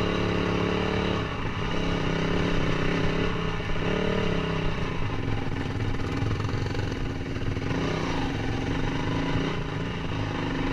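Dirt bike engine heard close up while riding a rough trail. Its note holds steady, breaks off briefly about a second in and again near four seconds, then runs rougher and less even through the second half.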